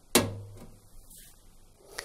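Plastic drain-hose retaining clip snapping free of a washing machine's rear cabinet under a fingertip: one sharp click just after the start, with a short ring. Faint handling noise follows, and a smaller click near the end.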